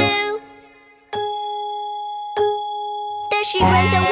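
A clock bell striking two: two clear strokes about a second and a half apart, each ringing on with a steady tone. Children's song music cuts off just before the strokes and comes back near the end.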